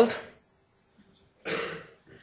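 A man coughs once, a short burst about one and a half seconds in.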